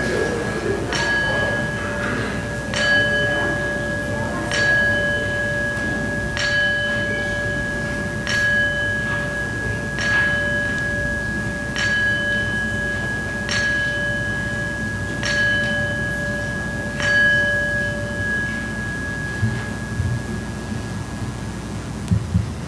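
A bell struck ten times, about once every two seconds, its clear tone ringing on between strikes and dying away after the last one.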